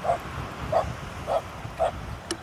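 An animal giving four short calls or barks, evenly spaced about half a second apart.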